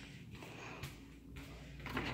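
Faint footsteps across an indoor floor: a few soft steps about half a second apart.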